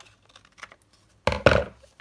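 Small scissors giving a few light snips as they trim a last sliver off a paper pocket. About a second and a half in comes a brief, much louder thump and rustle of paper being handled.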